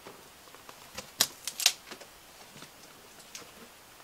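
Cardboard shipping box being opened by hand: the flaps are pulled up and handled, with a quick run of sharp cardboard crackles and snaps about a second in.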